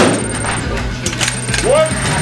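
A .308 bolt-action rifle shot at the very start, its loud report dying away over the first moment, then a few faint clicks about a second in.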